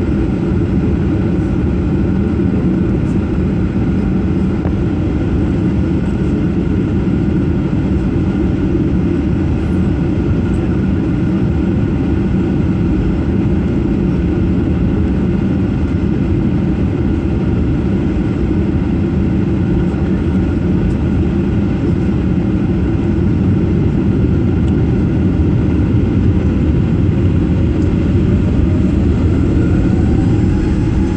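Jet airliner cabin noise: the engines run at idle as a steady low drone with faint steady tones above it. Near the end a tone starts rising in pitch.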